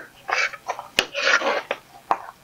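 Rockwool grow cubes with seedlings being pulled and cut apart by hand, giving short scratchy tearing and leaf-rustling noises, with a sharp click about a second in.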